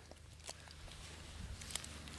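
Faint scattered clicks and soft rustling as a tandem skydiving harness is unhooked, over a low steady hum.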